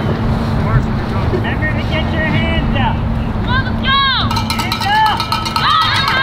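A steady low rumble and hum, with high-pitched shouts and calls from players and spectators. The shouts grow more frequent and louder after about three and a half seconds.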